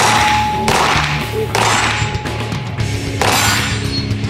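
Four loud metallic crashes, the first setting off a steady ringing tone that fades out about two and a half seconds in, over the low notes of a heavy rock soundtrack.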